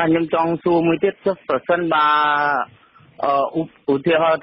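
Speech only: a man's voice reading radio news in Khmer, with one long drawn-out syllable about two seconds in.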